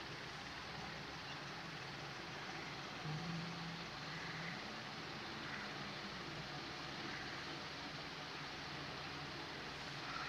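Steady, low background noise of a small room and microphone hiss, with a brief faint low hum about three seconds in.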